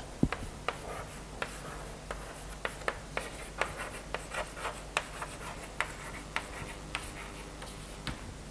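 Chalk writing on a blackboard: a run of short, irregular taps and brief scratches as letters are written.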